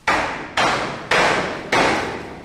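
Hammer blows, four strikes about half a second apart, each trailing off in a short echo.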